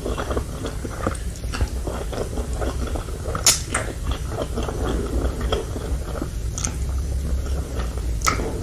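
Eating sounds from a mouthful of spicy, sauce-coated instant noodles: the noodles are slurped in and chewed, with many small wet mouth clicks and one sharper, louder click about three and a half seconds in.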